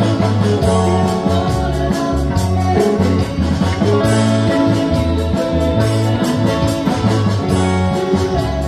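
Live band playing an upbeat pop song, with electric bass, guitars, keyboard and hand percussion keeping a steady beat.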